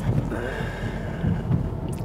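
Steady low rumble of engine and road noise inside the cabin of a VW Golf GTI Clubsport with a two-litre turbo engine, driving at low speed.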